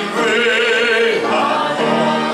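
A man singing a hymn solo in a full, operatic voice, holding notes with vibrato and moving to a new note about a second in.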